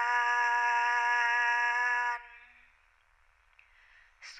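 A female singing voice holds one long, steady note in a Thai blessing chant; the note ends a little after two seconds in.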